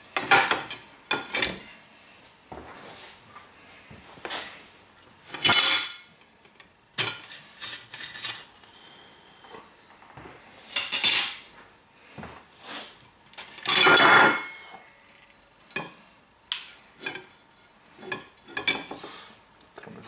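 Intermittent metallic clatter and rattling from the hot stainless-steel perforated drum of a small home coffee roaster being handled. There are short sharp clicks and a few longer rattles, the loudest about 14 seconds in.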